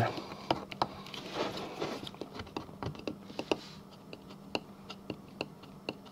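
Small plastic scraper working a vinyl stencil down onto a plastic disc to press out air bubbles at the edges: scattered light clicks with a few short scrapes, busier in the first half.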